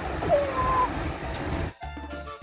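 Outdoor background noise with a short, high gliding call followed by a steady high tone, then edited-in background music with a melody and a low beat that starts abruptly near the end.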